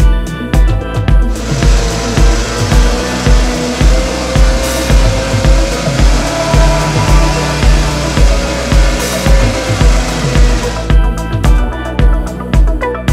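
A gasoline chainsaw cutting into a wood carving, starting about a second in and stopping near the end, its engine pitch wavering slightly as it cuts. Background music with a steady beat plays throughout.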